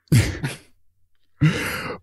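A man's short breathy laugh trailing off, then a pause and a breath just before talking resumes.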